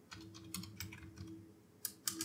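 Faint computer keyboard typing: a quick run of separate keystrokes, then one more near the end, as a search word is typed.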